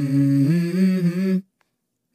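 A hummed 'mm-hmm' vocal line from a pop song, a short melodic phrase that cuts off sharply about a second and a half in.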